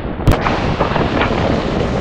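Strong gusting wind buffeting the camera microphone over the rush of waves breaking against the rock jetty, with one sharp thump about a third of a second in.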